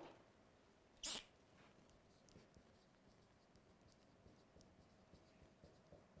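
Dry-erase marker writing on a whiteboard: faint light strokes and squeaks. One short, sharp sound stands out about a second in.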